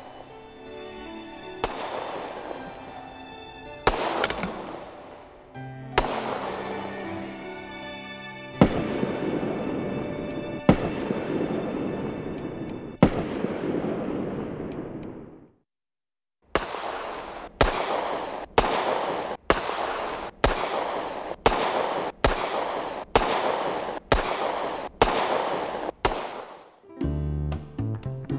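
Walther P88 9 mm semi-automatic pistol being fired: six single shots about two seconds apart, each with a long echoing decay. After a second's pause comes a rapid string of about fifteen shots, roughly one and a half a second.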